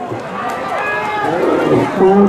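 Mostly speech: a man's voice calling over the horse race, words not made out, against a background of outdoor crowd noise.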